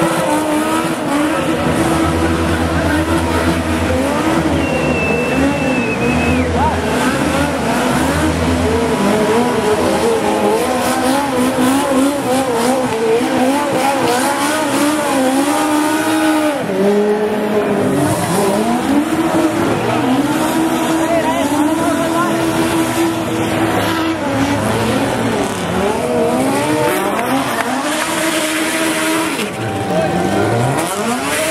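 Legends race cars doing donuts, their Yamaha motorcycle engines revving up and down over and over, with tyre squeal as the rear tyres spin.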